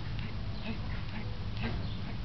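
Arms and fists smacking against each other as hammer-fist strikes are blocked, several short sharp hits, over a steady low rumble.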